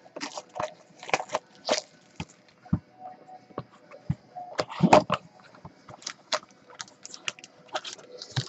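Handling noise from a sealed trading-card box being unwrapped and opened: scattered crinkles, taps and scrapes of cardboard and wrapping, with a louder cluster about five seconds in.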